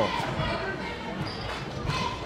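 Basketball being dribbled on a hardwood gym floor, the bounces carried over the general noise of a large gymnasium.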